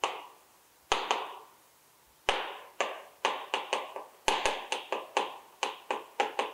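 Chalk writing on a chalkboard: a quick run of sharp taps as each short stroke hits the board, broken by two brief pauses in the first two seconds.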